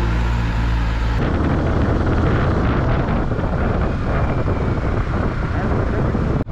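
A steady low hum for about the first second, then a motorcycle engine running under a dense rush of wind over a helmet-mounted camera's microphone as the bike rides along the road.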